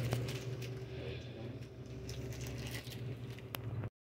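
Quiet room tone with a steady low hum and faint rustling, one sharp click near the end, then the sound cuts off suddenly.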